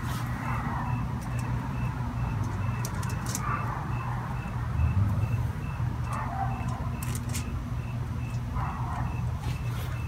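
Soft rustling and light taps of a plastic pickguard being laid and pressed onto adhesive-sprayed aluminum foil over cardboard, against a steady low hum. A faint high-pitched chirp repeats about three times a second throughout.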